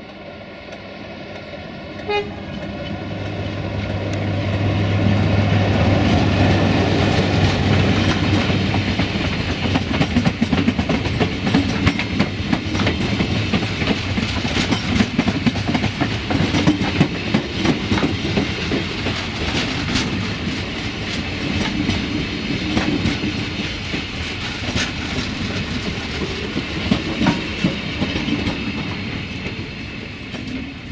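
An LDH1250 diesel-hydraulic locomotive passing close by, its diesel engine droning and loudest about six seconds in. After it come the wheels of the Bombardier Talent railcars it is hauling, clattering over the rail joints in rapid clicks for the rest of the time. There is a short, sharp tone about two seconds in.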